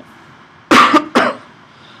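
A man coughing twice in quick succession, about two thirds of a second in.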